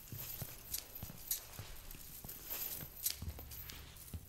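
Irregular sharp clicks and knocks, about two a second, like hard steps, over a low hum. The sharpest click comes about three seconds in.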